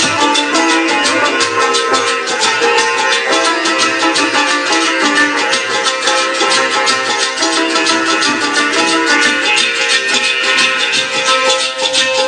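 Two sitars playing a fast Pothwari folk tune live, with a busy rattling beat of rapid strokes.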